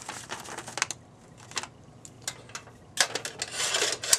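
Plastic colour gel crinkling and rustling as it is slid into a par can's metal gel frame. A few light clicks of handling come first, then a louder crinkle about three seconds in.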